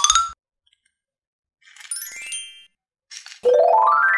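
Cartoon-style chime sound effects: a rising run of ringing notes ends just after the start, a short high twinkling chime sounds about two seconds in, and another rising run of notes begins near the end.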